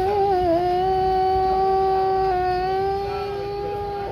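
A man chanting the adhan, the Islamic call to prayer, holding one long high note with a short waver about half a second in, growing softer near the end.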